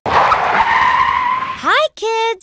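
Cartoon tyre-screech sound effect of a car skidding to a stop, lasting about a second and a half. A high, cartoon-like voice starts speaking near the end with a rising "hi".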